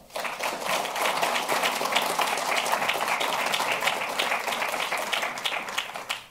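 Audience applauding, a steady patter of many hands that starts at once and dies away at the end.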